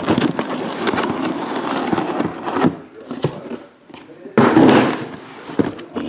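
Cardboard case of trading-card boxes being torn open: a long crackling rip of about two and a half seconds, then a shorter, louder rip of the cardboard about four and a half seconds in.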